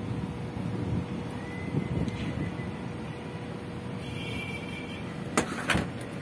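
A steady low background rumble with a faint constant hum, broken near the end by two sharp clicks half a second apart.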